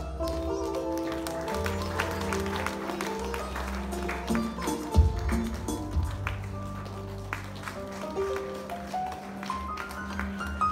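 Instrumental background music from a live stage band, led by electronic keyboard: a melody of held notes stepping up and down over steady bass notes. There are scattered light taps and one sharp knock about five seconds in.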